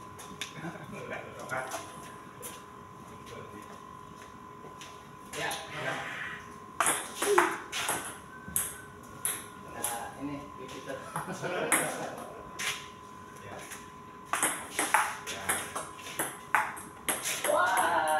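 Table tennis rally: the ball ticking sharply off the paddles and the table in quick runs of taps, mainly about 7 seconds in and again over the last few seconds, with people talking between points.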